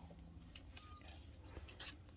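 Near silence: a faint low hum with a few soft ticks.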